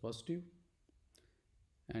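A man's spoken word trails off, then a quiet pause holding two faint sharp clicks from a computer mouse, with speech starting again just before the end.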